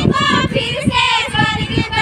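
A group of women singing together in high voices, over an uneven low rumbling noise.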